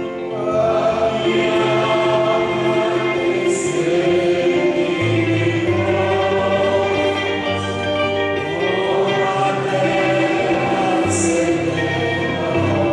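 Choir singing a church hymn with instrumental accompaniment, held notes over a stepping bass line, with two brief high hits about three and a half seconds in and again near the end.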